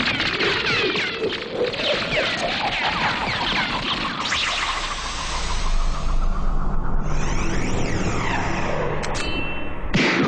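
Animated fight-scene soundtrack: dramatic music mixed with dense whooshes and hits, under a pitch that climbs slowly over the first six seconds. A brief bright ringing tone comes near the end.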